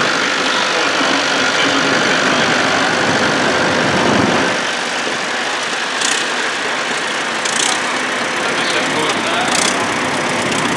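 International Harvester 1455 XL tractor's diesel engine running as it drives slowly past, over a steady murmur of crowd voices.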